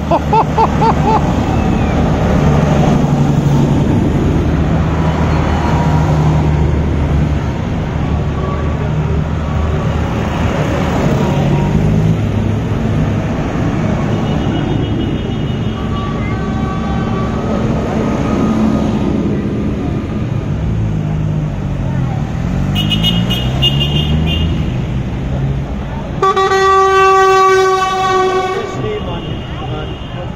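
Tractor engines running loudly as a convoy of tractors drives past, with short horn toots along the way. A long, loud horn blast sounds about 26 seconds in and lasts over two seconds.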